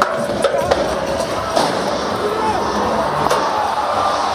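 Loud arena music and crowd noise at a bull ride, with a few sharp knocks from the chute as the gate opens and the bull bucks out.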